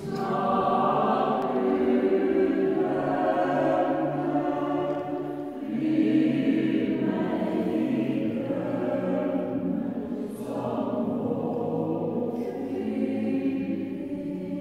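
Mixed choir of men's and women's voices singing sustained chords in long phrases, with brief dips between phrases about a third of the way in and again about two-thirds in.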